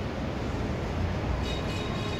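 Steady low rumbling room noise of a crowded prayer hall with many ceiling fans overhead.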